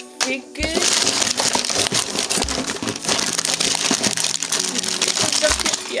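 Foil and plastic blind-bag packaging crinkling and rustling as a hand rummages through a cardboard box of toy packages, with three dull low thumps.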